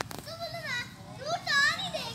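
Children's high-pitched voices calling and squealing in play, a few rising-and-falling calls with the loudest about a second and a half in.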